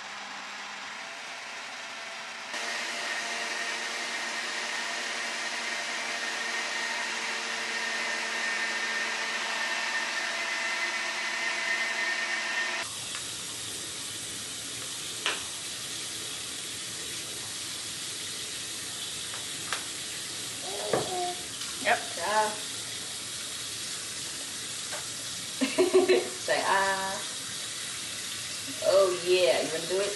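Electric blender running as it blends a protein shake, its motor whine stepping up and getting louder a couple of seconds in. About thirteen seconds in it gives way to a water tap running in a small room, with a single click and a few short vocal sounds near the end.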